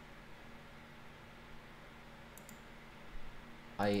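Quiet room tone with a low steady hum, and a faint quick double click about two and a half seconds in; a man's voice starts right at the end.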